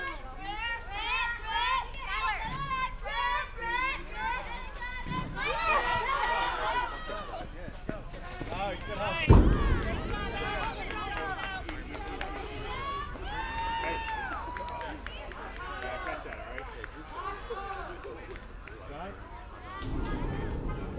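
Young girls' voices cheering and chanting in high, sing-song calls, with one loud thump about nine seconds in. A steady high-pitched tone runs underneath.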